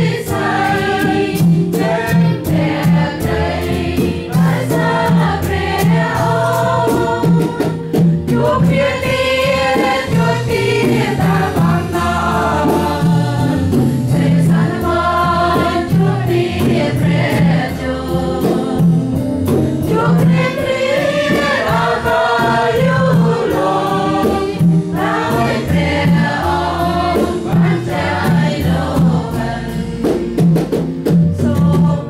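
A choir singing a Christian hymn in Khmer over a steady low bass line with percussion.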